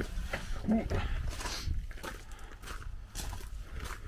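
Shuffling footsteps on gravel and a brief grunt from a man squeezing through a narrow gap, over a low rumble on the microphone.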